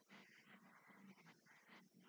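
Near silence: faint hiss and room tone.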